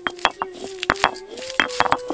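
Stone roller of a silbatta knocking and grinding on the stone slab as it crushes ginger and garlic: a string of irregular sharp taps and clicks, the loudest a little under a second in.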